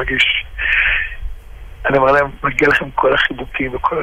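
Speech only: a person talking, with a pause of about a second partway through.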